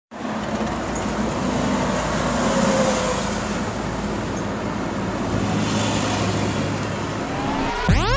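Steady rushing noise with a low hum inside a car, the engine and heater blower running while the windshield is still covered in snow. In the last second a rising electronic sweep begins, leading into intro music.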